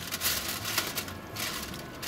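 Aluminium foil crinkling and rustling as tongs peel it back off a roasting pan, with irregular crackly ticks.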